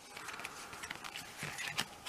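Trading cards being flicked one by one off a hand-held stack: a run of faint, irregular clicks and card-on-card rustles, a few sharper snaps near the end.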